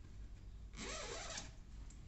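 Zipper of a zip-up hoodie being undone in one quick pull, a short rasp of under a second about a second in.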